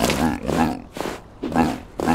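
Cartoon seal character's wordless vocal noises: a few short grunting, mumbling utterances that rise and fall in pitch.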